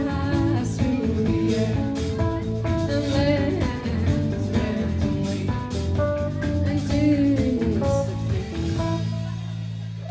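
Live rock band playing an instrumental passage: electric guitars over a drum kit. About nine seconds in, the drumming stops and a held chord rings on, fading.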